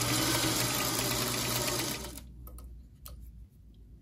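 Singer sewing machine running steadily as it stitches a seam, stopping about two seconds in. One light click follows about a second later.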